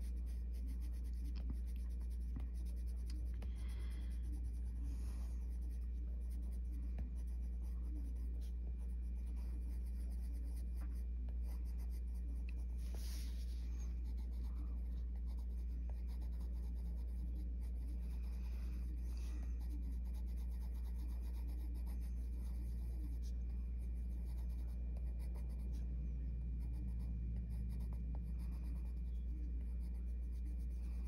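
Coloured pencil scratching over paper in short, repeated shading strokes, under a steady low hum.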